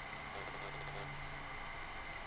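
Room tone: a steady faint hiss with a low hum, and no distinct handling sounds.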